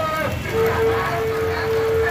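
Street noise with distant voices. A single steady tone starts about half a second in and is held for about a second and a half.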